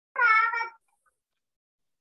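A cat meowing once: a short, high call about half a second long, in two parts.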